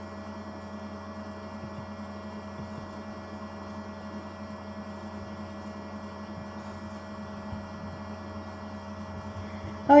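Steady low electrical hum on the recording, a few fixed tones held without change, with no other clear sound.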